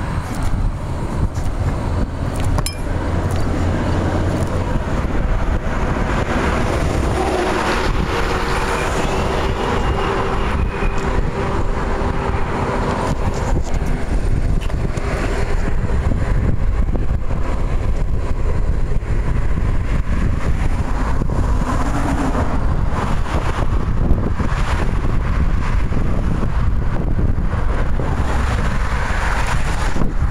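Steady rushing and rumbling of a wheelchair speeding down a long highway hill: wind over the microphone and tyres on the asphalt.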